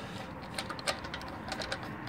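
Light, irregular metallic clicks and ticks as a wheel lug bolt is threaded into the hub by hand.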